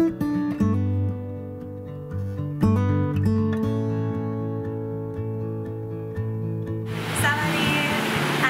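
Background music of plucked and strummed acoustic guitar with chords that change every second or so. About seven seconds in the music stops and steady noise with a voice takes over.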